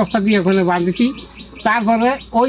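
A man's voice talking, with a bird chirping in the background.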